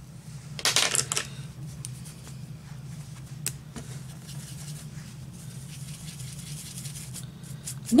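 Hands handling a makeup brush against a paper tissue: a brief cluster of rustles and clicks about a second in, then a single sharp click a few seconds later, over a steady low hum.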